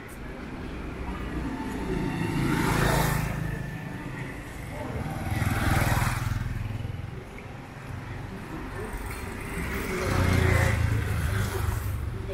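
Motorbikes passing close by on a street, three in turn, each swelling and fading over a couple of seconds.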